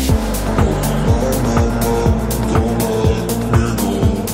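Electro house dance track dropping in at the start after a rising noise build: a deep, pitch-falling kick drum about twice a second with crisp hi-hats between, over sustained synth chords.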